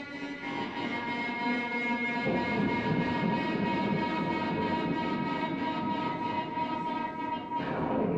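Disarm violin, built from decommissioned firearm parts, bowed in one long held high note, with a rough, noisy layer underneath from about two seconds in. The note briefly breaks near the end.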